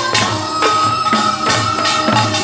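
Korean pungmul folk music: drums strike a steady rhythm about two beats a second, with metallic percussion and a long held high melodic note over them.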